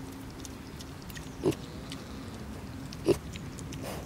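Piglets grunting: three short grunts, the loudest about three seconds in.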